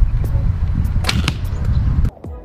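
A horse bow shot about a second in: a sharp snap of the string and the arrow leaving. It sounds over a steady low rumble of wind on the microphone.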